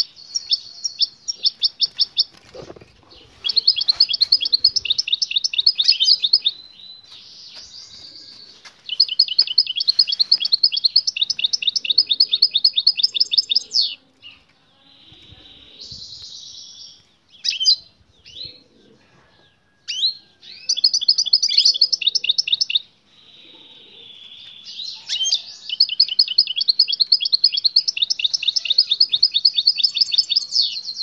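Caged European goldfinches calling in bursts of rapid, high-pitched chattering trills lasting a few seconds each, with short buzzy notes between. This is the chatter that goldfinch keepers take for a female's mating call, which draws the male into song.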